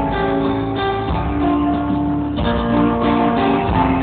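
Live band music with strummed guitar in an instrumental stretch with no singing, recorded from the crowd in a large arena.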